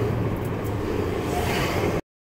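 Steady low hum of a running car heard from inside its cabin.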